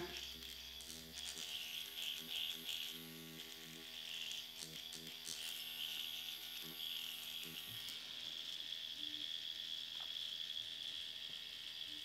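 Dr. Pen X5 electric microneedling pen running against the skin around the lips, a faint, steady high buzz.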